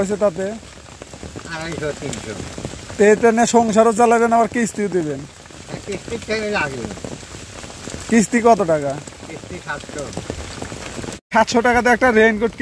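Steady rain falling, an even hiss throughout, with people talking over it at intervals.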